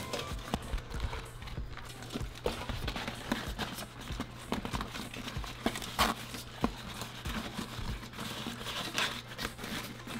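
Banana leaves rustling and crackling as they are laid and pressed down over meat in an aluminum steamer pot, with irregular light taps and knocks against the pot, the loudest about six seconds in. A faint low steady hum runs underneath.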